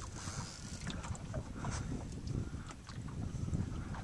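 Wind buffeting the microphone over a steady low rumble of outdoor noise, with a few faint, scattered clicks.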